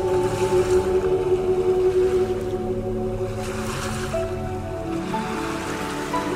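Ocean surf washing onto a beach, swelling and easing a few times, mixed with soft instrumental music of long held notes.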